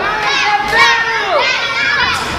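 Children in the wrestling crowd shouting and cheering, several high voices overlapping at once.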